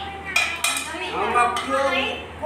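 A few sharp clinks of snail shells and fingers against a large metal serving tray as people pick stir-fried snails from the heap, with voices in between.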